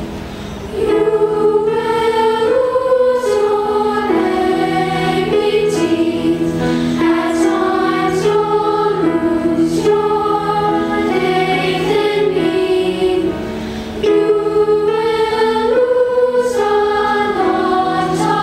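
Background music: a choir singing over instrumental accompaniment. It comes in about a second in and eases briefly about three-quarters of the way through before the singing resumes.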